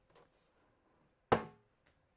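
Wooden drop-front lid of a small cabinet swung shut, meeting its magnetic catches with a single sharp clack about a second and a half in.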